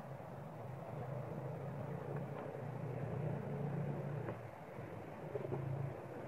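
Steady low rumble of outdoor background noise, with a few faint ticks.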